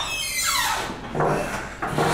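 Wood-veneer toilet-cubicle door squeaking on its hinge as it is pushed open: a squeal falling in pitch over about a second, followed by a shorter rubbing scrape.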